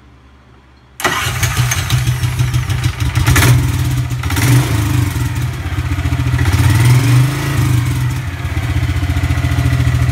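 The 625cc 23 HP big-block gas engine in an EZGO golf cart starts suddenly about a second in. Its revs rise and fall a few times, then it settles into a steady idle.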